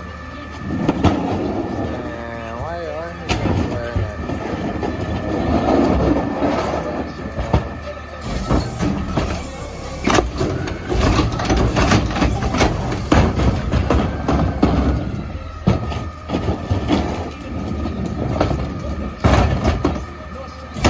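CNG-powered Mack LEU McNeilus Pacific side-loader garbage truck running with a steady hum while its front carry can lifts a cart and tips it into the hopper. Repeated clanks and bangs of the cart and can come in the middle and again near the end.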